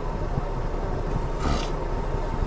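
Steady low rumble of a stopped car, heard from inside its cabin, with a short rustling scrape about one and a half seconds in.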